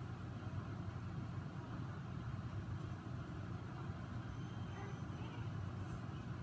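Steady low rumble of room noise, even throughout, with faint indistinct voices barely above it.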